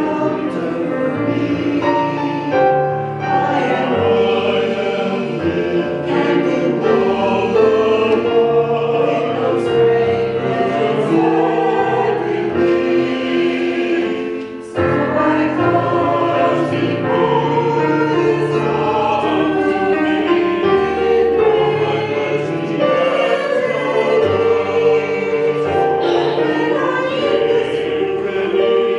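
A mixed choir of men's and women's voices singing a church anthem in harmony, with a short break between phrases about halfway through.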